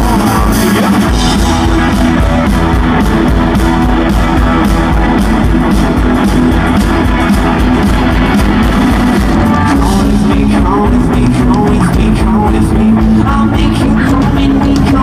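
Live rock band playing loud and steady: electric guitars, drum kit and keyboard.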